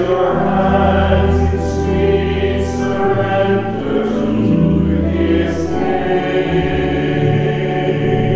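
A choir singing a hymn with accompaniment, in long held chords over steady low bass notes, the sung consonants faintly audible.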